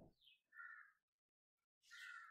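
Near silence with two faint, short bird calls in the background, one about half a second in and another near the end.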